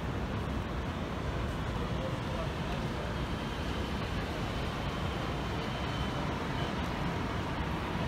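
Busy city street ambience: a steady rumble of road traffic with people talking nearby.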